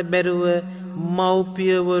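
Buddhist monk chanting Sinhala kavi bana verse: a single male voice in a drawn-out, melodic chant with long held notes.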